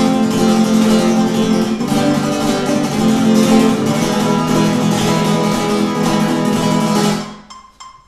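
Nylon-string Spanish guitar strummed in fast flamenco triplets (abanico) on one chord, an even, rapid run of strokes. It stops a little after seven seconds in, and the chord fades away.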